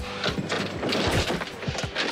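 A quick, irregular run of knocks and scrapes from an alligator moving and bumping against the bed of a pickup truck.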